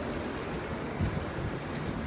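Steady city street ambience: an even low rumble and hiss of distant traffic, with a brief low knock about a second in.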